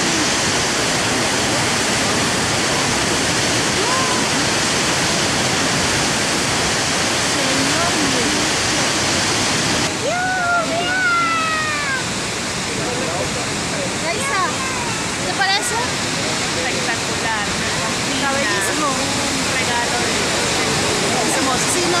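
Large waterfall plunging into a gorge: a loud, steady rush of falling water. Faint voices of people nearby come through now and then.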